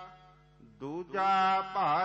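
A voice chanting Gurbani verse in a slow, melodic recitation with long held notes. The held note fades into a short pause at the start, and the voice comes back with a rising phrase a little under a second in, then holds its note again.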